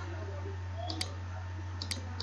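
Two computer mouse clicks, about a second in and near the end, as colours are picked in a colour picker, over a steady low electrical hum.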